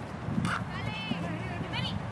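A soccer ball being dribbled on a grass pitch: soft touches of foot on ball and running footsteps, with short high chirping calls in the background.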